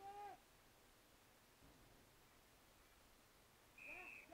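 Mostly near silence, with faint distant shouted calls at the very start and again just before the end. A brief high whistle-like tone sounds right before the end.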